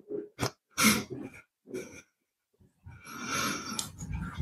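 A man laughing in short breathy bursts, then, after a brief pause, a longer breathy sound as he holds a cloth to his face.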